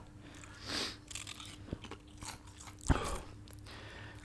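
A person biting and chewing a crunchy snack, a few soft crunches with one louder bite about three seconds in.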